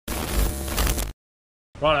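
Glitchy, static-like burst of an edited transition sound effect with a deep low end, cut off dead about a second in. A man says "Righto" near the end.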